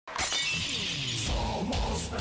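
Intro music starting suddenly out of silence with a crash like shattering glass and tones sliding down in pitch, then a heavy low beat coming in about halfway through.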